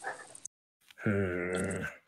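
Speech only: a man's voice ends a word, then after a short gap holds one long, level drawn-out vowel for about a second.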